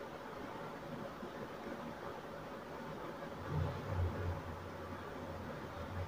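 Quiet, steady room noise with a faint hum, and a few low bumps like handling noise about three and a half seconds in.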